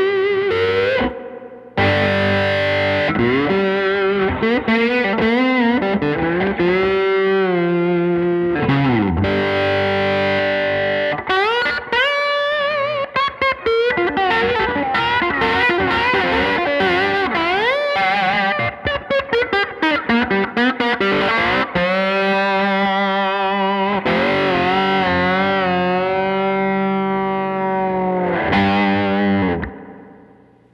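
Guild Surfliner HH solidbody electric guitar on its neck humbucker alone, overdriven and played through a 1964 Fender Vibroverb amp: distorted lead lines with string bends and vibrato. It stops just before the end.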